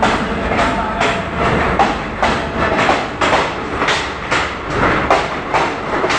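ICF multiple-unit passenger train passing at close range, its wheels clattering over rail joints with sharp knocks at roughly two a second over a steady rumble.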